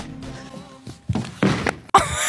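A person's shin knocking hard into a solid set fixture: a thunk about a second in, then a second knock, over quiet background music.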